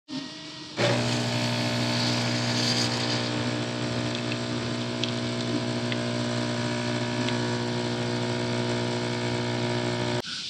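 Nescafé Barista coffee machine brewing, its pump running as coffee pours into a cup: a steady hum that starts about a second in, with a few faint ticks.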